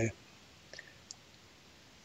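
Quiet room tone with two faint short clicks, about three-quarters of a second and a second in.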